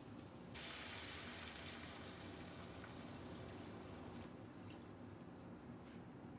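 Chicken stock poured from a carton into a pot: a steady pour that starts suddenly about half a second in and thins out near the end.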